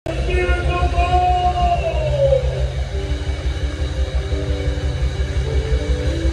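Live gospel band music with a heavy, evenly pulsing bass and held pitched tones above it. One of the held tones slides down in pitch about two seconds in.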